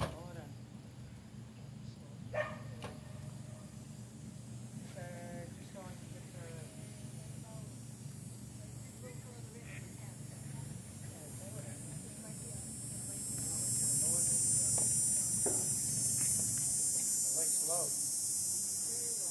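Faint, distant voices come and go. About two-thirds of the way through, a steady high-pitched buzz of insects swells up and becomes the loudest sound.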